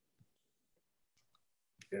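Near silence in a pause between speech, with a few faint ticks and a short click just before a man says "yeah" near the end.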